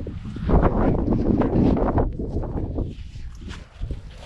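Wind rumbling on the microphone with rustling footsteps through grass, loudest in the first half and dying down towards the end.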